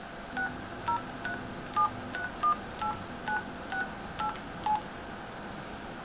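Mobile phone keypad sounding touch-tone dialing beeps as a number is keyed in: about eleven short two-note beeps, roughly two a second, stopping a little before the end.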